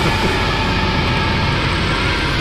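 Heavy metal music: distorted guitars over rapid, even low drumming, with a sustained higher tone above.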